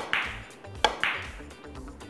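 Ivory-hard carom billiard balls clicking in a three-cushion shot: a sharp click as the cue strikes the cue ball, then a second sharp click a little under a second later as the ball meets another ball, over light background music.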